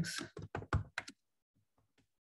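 Computer keyboard keystrokes: a quick run of about six key clicks that stops about a second in.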